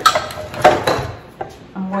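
Foil-lined metal baking pan set down on a kitchen countertop: a sharp clatter at the start, a second knock a moment later and a light click after.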